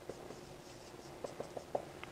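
Marker pen writing on a whiteboard: faint, short strokes and taps, with a quick run of four about a second and a half in.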